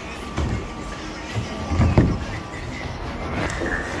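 A bowling ball released down a plastic bowling ramp and rolling onto a wooden lane: a couple of knocks, the loudest a low one about two seconds in, then a low rolling rumble. Background music plays under it.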